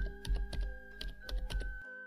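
Computer keyboard typing: a quick, irregular run of key clicks as a username is entered, over soft background music with sustained notes.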